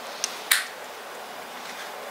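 Two small, sharp clicks about a quarter and half a second in, the second the louder, from small plastic-and-metal microphone phone adapters being handled in the fingers, followed by faint steady room hiss.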